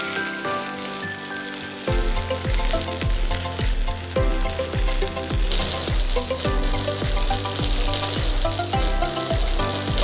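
Pomfret pieces sizzling as they shallow-fry in oil in a non-stick pan, with a spatula stirring them. Background music plays over it, and a bass line and drum beat of about two beats a second come in about two seconds in.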